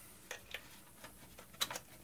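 Faint, scattered plastic clicks and taps of a plug being pushed home into a Kill A Watt plug-in power meter at the mains outlet, with the loudest pair of clicks about one and a half seconds in.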